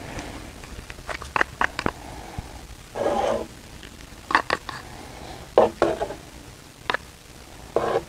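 Scattered light clicks and taps with a few short scraping rustles: tools and a mixing cup handled while black color is laid into wet epoxy in a sample tray.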